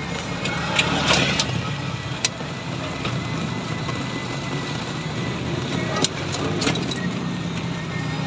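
Ride noise inside a moving NWOW electric tricycle on a wet road: a steady hum from the drive and tyres, with the cabin frame and curtains rattling. Several sharp clicks or knocks cut through, the loudest about a second in and around six seconds.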